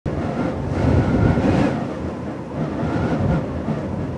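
A loud, steady low rumble without speech or music, with a faint wavering whistle about a second in and again near three seconds.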